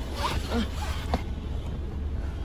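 Handling noise: rustling and rubbing as the person holding the phone moves on the rear seat and brushes the upholstery, over a low steady rumble.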